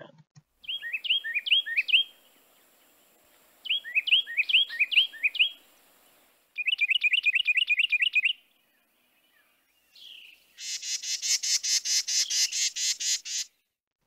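Carolina wren song from a recording: three loud bursts of a quickly repeated rolling phrase, the 'teakettle, teakettle, teakettle' pattern, the third burst faster, followed near the end by a rapid noisy chatter of about five notes a second.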